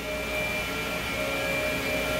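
Steady hum of running machine-shop equipment, CNC lathes among it, with a few faint whining tones held steady over it.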